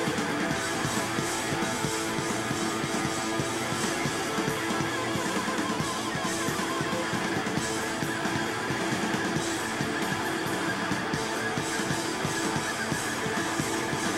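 Rock band playing live: electric guitar over a full drum kit, with cymbal strikes keeping an even beat.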